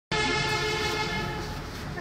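A sustained pitched tone, rich in overtones, that starts suddenly and fades out after about a second and a half.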